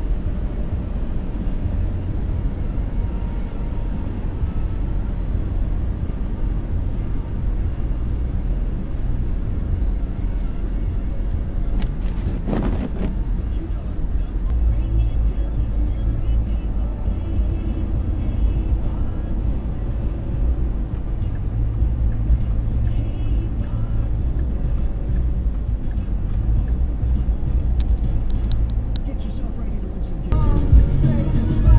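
Steady low road and engine rumble inside a moving car's cabin, with one brief louder noise about twelve seconds in.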